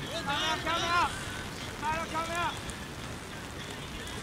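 Players shouting calls during rugby play: two bursts of loud, high-pitched shouts, about a second in and again around two seconds, over a steady background hiss.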